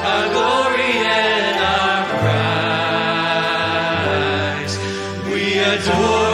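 Live worship band and singers performing a worship song, voices holding long notes over sustained bass notes.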